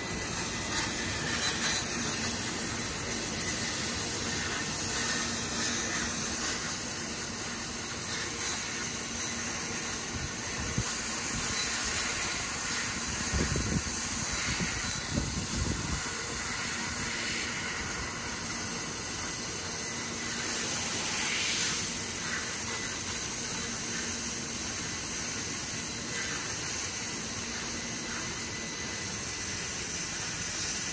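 3 kW fiber laser cutter cutting thin carbon-steel sheet: a steady hiss from the cutting head as it traces the pattern. A few low thumps come about halfway through.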